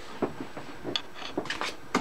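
Several light, irregular clicks and taps of plastic being handled on an Epson inkjet printer as it is readied to feed envelopes.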